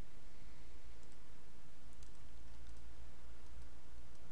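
Steady low hum and light hiss of a quiet room mic, with a few faint computer mouse clicks about two seconds in as the charting software is switched over.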